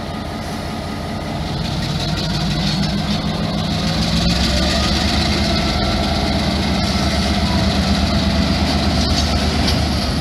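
End-cab diesel switcher locomotive's engine throttling up, its note rising and growing louder over the first four seconds, then running steadily under load as the locomotive moves a tank car.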